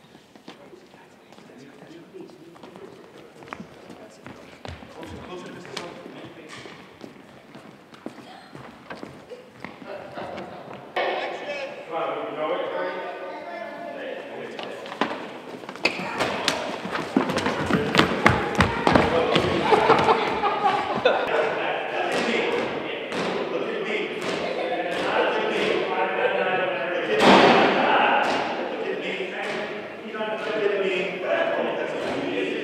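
Footsteps and thumps on a wooden gym floor with a group of people shouting and yelling. It starts quiet with scattered light taps. Voices come in about a third of the way through, and the second half is loud, with many running footfalls and shouts and a loudest yell near the end.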